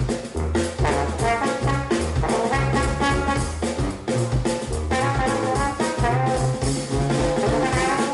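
Live jazz band: a trombone plays a melody over a drum kit keeping a steady beat.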